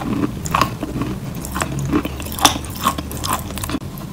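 Biting and chewing a dry, crumbly chalk-like block: a run of irregular crisp crunches.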